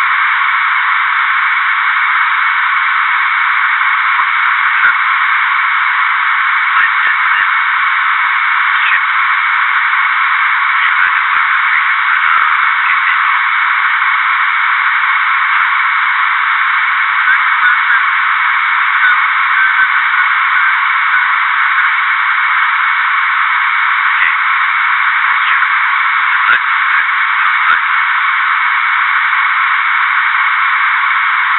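Steady, thin radio-like hiss with no low end, the background noise of a reconstructed cockpit voice recording, with a few faint clicks scattered through it.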